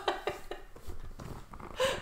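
A lull between talk, holding a few faint, light knocks and clicks in a small room, with a short breathy sound near the end.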